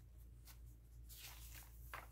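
Near silence with a steady low hum, broken by a few faint rustles of paper as the pages of a handmade journal are turned, the clearest near the end.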